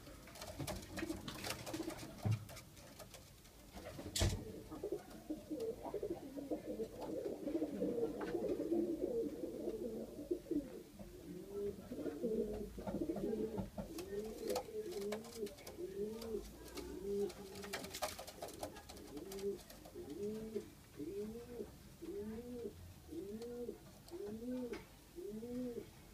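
Pakistani domestic pigeons cooing in a small loft: overlapping coos at first, then from about halfway a regular run of coos, each rising and falling, about one a second. A couple of sharp knocks cut in, one early and one past the middle.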